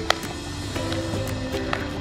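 Music playing, with held notes that step from pitch to pitch and a few sharp percussive clicks.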